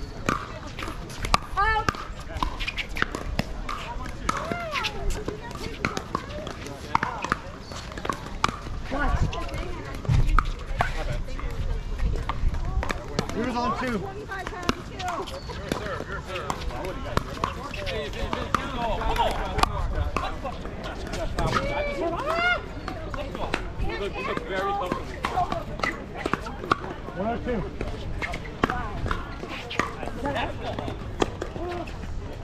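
Indistinct overlapping chatter of players and onlookers, scattered with sharp irregular pops of pickleball paddles hitting the plastic ball.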